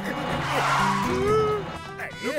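Cartoon sound effect of a van speeding past, a rushing whoosh that swells about half a second in and fades just after a second, over background music.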